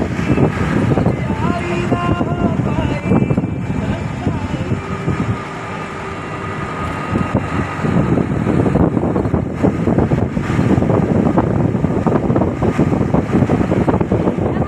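Engine and road noise from inside a moving vehicle, with wind buffeting the microphone at the open window.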